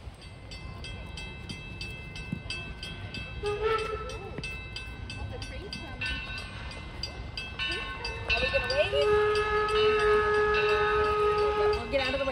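Steam locomotive approaching, its bell ringing in steady, evenly spaced strikes. Its steam whistle gives a short blast about three and a half seconds in, then a long blast of about three seconds near the end.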